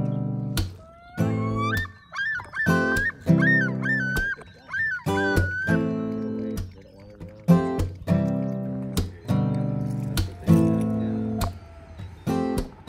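A common loon calling: a rising note about a second in, then a run of repeated wavering phrases for about four seconds, heard over strummed acoustic guitar music.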